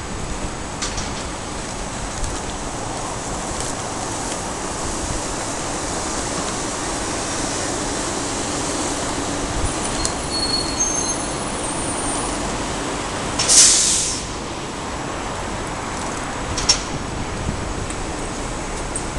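Road traffic: vehicles passing steadily, with a faint high squeal about ten seconds in. A loud, short hiss of air stands out about three-quarters of the way through, with a smaller one shortly after.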